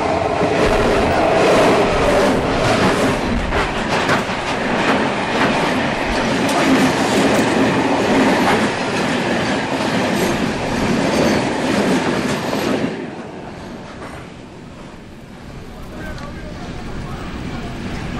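Freight train passing close by: a loud rumble of wagons with wheels clicking over the rail joints. About thirteen seconds in it has gone by and the sound falls away to a much quieter background.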